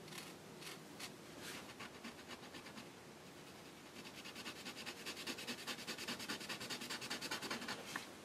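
Faint scratching of a BIC Mark-It permanent marker's felt tip on a canvas sticker as it is coloured in. A few separate strokes at first, then quick back-and-forth strokes, about five a second, from about halfway.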